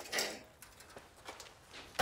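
Faint handling noises of a rusty steel VW Kombi front panel being lifted and moved: a short scrape just after the start, then a few soft knocks, with a sharper knock near the end as it is set against the corrugated-iron wall.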